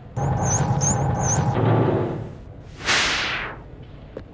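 Cartoon magic sound effect: about two seconds of whirring shimmer with four quick high twinkles, then a short whoosh about three seconds in, the sound of a spell whisking the character away.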